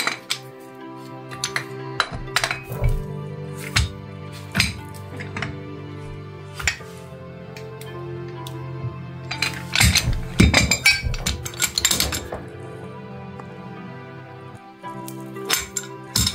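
Background music, with sharp metal clinks and clanks of a pipe wrench and an adjustable wrench against galvanized steel pipe fittings as a threaded fitting is tightened. The clanking is busiest and loudest about ten to twelve seconds in.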